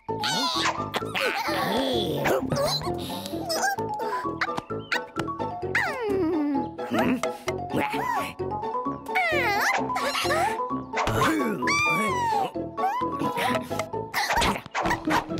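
Cartoon background music with the wordless, high, gliding vocal noises of animated characters over it: chirps, coos and babble that rise and fall in pitch.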